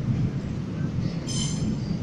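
Train running on rails with a low steady rumble, and a brief high-pitched wheel squeal about one and a half seconds in.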